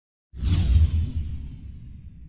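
Logo sting sound effect: a sudden whoosh over a deep low boom, starting about a third of a second in, with the hiss falling away and the whole sound fading slowly.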